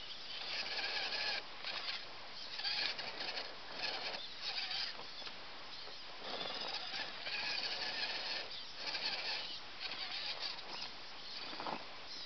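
RC rock crawler's motor and drivetrain whining in short throttle bursts, starting and stopping every second or so as it works its way over a log.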